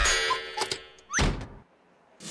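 Cartoon sound effects of a cuckoo clock's bird springing out on its folding scissor arm: a loud, sudden burst at the start, then a quick rising swish about a second in as it snaps back inside.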